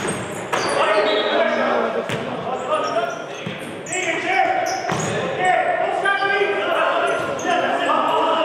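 Futsal ball being kicked and bouncing on the sports-hall floor, with a few sharp knocks, while players shout and call to each other, echoing in the large hall.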